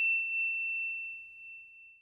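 The ringing tail of a single high, bell-like ding: one clear tone fading steadily, cut off just before speech resumes.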